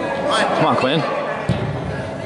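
Shouts from spectators echo through a large indoor soccer hall, then the soccer ball is struck once with a sharp thud about one and a half seconds in.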